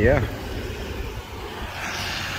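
A car driving past on a wet, flooded road, its tyres hissing through the water as it comes closer near the end, over a steady low rumble of traffic.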